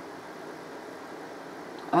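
Faint, steady background noise: room tone with a low hum and hiss, with no distinct sounds.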